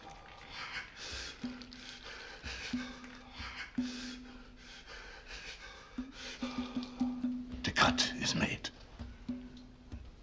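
Soft whispering, breathy voices in short repeated bursts over a low held hummed note that comes and goes, with a louder burst of voices about eight seconds in.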